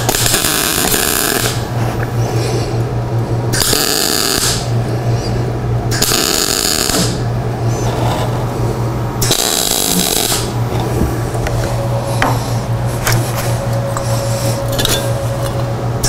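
Everlast Power MTS 251Si welder MIG-welding steel: the arc sizzles and crackles steadily over a low hum, the sound shifting every few seconds between a bright, hissing sizzle and a lower buzz.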